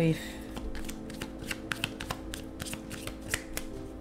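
Tarot cards being shuffled by hand: a run of irregular, crisp clicks and flicks.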